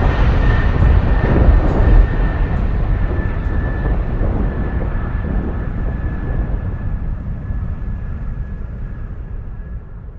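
Loud rumbling noise with a faint steady high tone running through it, fading out gradually over the last few seconds.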